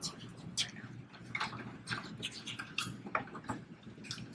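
Scattered light clicks and taps of a truck wheel and its lug nuts being handled on the hub's studs.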